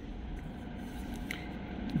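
Quiet, steady background noise with a faint tick a little past the middle.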